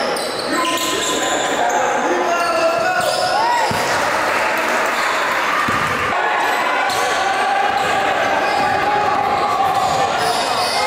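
Basketball dribbled on a wooden gym floor, with indistinct voices of players and spectators in the echoing gym.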